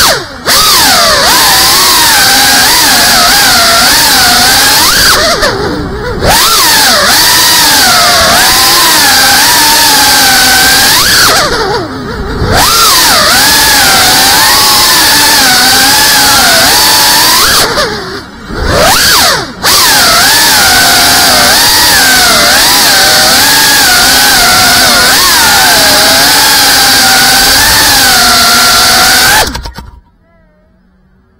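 FPV quadcopter's brushless motors and propellers whining over a loud hiss, heard through the onboard camera, the pitch wavering up and down with the throttle. The sound drops out briefly about 6 and 12 seconds in and twice near 19 seconds, where the throttle is cut, and stops suddenly at the end.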